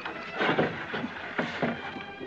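A few short knocks and thuds on wood, the clearest about half a second in and again around one and a half seconds in.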